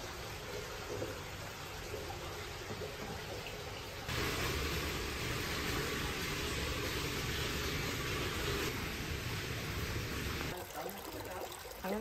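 Hot-spring water pouring into onsen baths, a steady running and splashing rush. It gets louder about four seconds in and drops back near the end.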